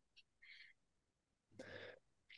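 Near silence in a video-call podcast, with a faint short blip about half a second in and a faint soft sound near the end.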